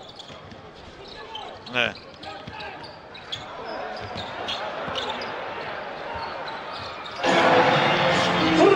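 Basketball arena during play: ball bounces over a low crowd murmur. About seven seconds in, the home crowd suddenly breaks into loud cheering as a three-pointer drops.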